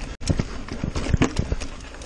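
Mountain bike, a Niner RIP 9, clattering and knocking over rocks and roots at speed: a run of sharp, irregular impacts from the tyres, chain and frame, after a brief dropout just after the start.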